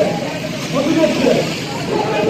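A marching crowd of people talking and calling out at once, many voices overlapping with no single clear speaker.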